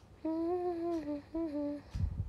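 A young woman humming a short melody into a close microphone, in three held phrases that rise and fall slightly in pitch. A brief low thump comes at the very end.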